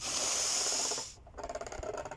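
A woman drawing one deep breath in for a breathing exercise: a breathy hiss lasting about a second, then a pause as she holds it.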